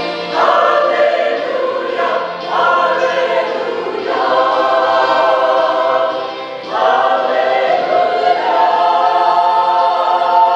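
Mixed church choir singing, men's and women's voices together, in long held notes with the chord moving every couple of seconds.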